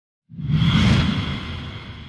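A whoosh sound effect for an animated logo intro, swelling in suddenly a moment after the start and slowly fading away.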